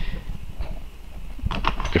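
Faint clicks and light rattles from a diecast toy car's plastic chassis and loose axles being handled, over a low steady hum.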